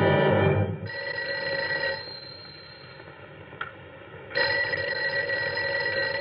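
Old desk telephone bell ringing twice, each ring lasting one to two seconds with a pause of about two seconds between them.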